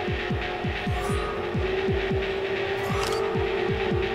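Electronic soundscape: a continuous run of deep thuds that drop in pitch, paired like a heartbeat, over a sustained droning hum.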